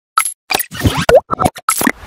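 A quick run of about eight short synthetic pops and plops, some with a brief bending pitch, the loudest just after a second in. These are the sound effects of an animated logo intro.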